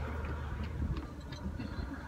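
Faint, scattered light clicks and taps of a utensil against an opened metal tin can, over a low steady hum.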